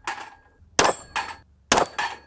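Two 9mm shots from a Glock 17 Gen 5 pistol, just under a second apart. Each comes with the clang and ring of struck steel plate targets.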